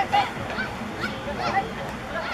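Several short, high shouted calls in quick succession over outdoor background noise, the kind of calling from players or onlookers during open play in a football match.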